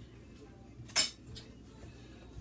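A single sharp clink of a kitchen utensil striking a dish about a second in, with a few faint knocks before and after.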